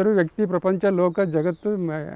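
A man talking, in continuous speech.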